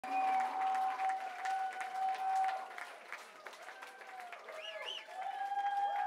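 Club audience applauding and cheering, with whistles and shouts gliding in pitch over a steady held tone. The clapping is fullest in the first couple of seconds, eases off, then swells again near the end.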